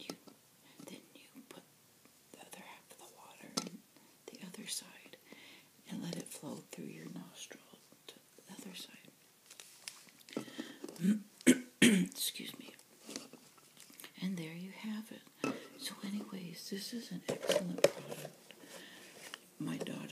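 Soft, whispery speech throughout, with a few sharp knocks and clicks around the middle and one near the end.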